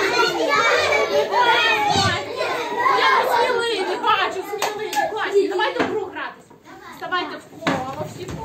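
Many young children's voices talking and calling out at once, dying down about six seconds in, with a sharp knock near the end.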